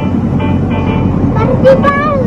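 A child's voice starts singing about one and a half seconds in, over a backing track and a loud steady low rumble.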